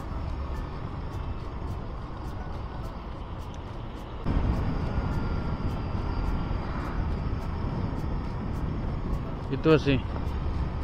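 Wind and road rumble on a motorcycle rider's microphone while riding, a steady rushing noise that grows louder about four seconds in.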